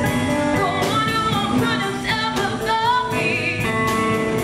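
Live blues band playing electric guitars, bass guitar and drum kit, with a woman singing over it.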